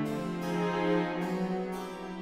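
Chamber orchestra playing: harpsichord plucking notes over held string tones, with flute and oboe.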